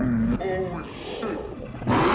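A large creature growling and roaring on the show's soundtrack, in rising and falling calls, cut off near the end by a sudden loud burst of noise.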